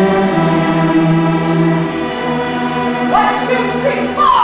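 A large student string orchestra of violins, violas, cellos and basses plays sustained chords, with a short sliding pitch near the end.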